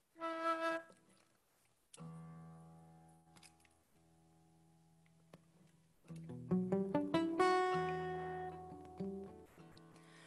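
Acoustic guitar and flute playing the quiet opening of a folk song. A short flute note comes first, then guitar chords ring out and fade, then picked guitar notes with the flute joining in a long held note.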